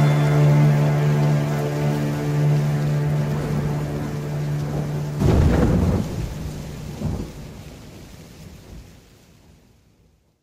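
Thunder with rain over the end of a song. A held musical chord fades, then a roll of thunder breaks in about five seconds in and a second, smaller rumble follows about two seconds later. The sound dies away to nothing near the end.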